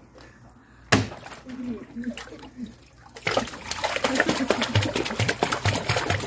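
A sharp click about a second in, then from about three seconds in continuous splashing and churning of pool water as a small dog paddles in it.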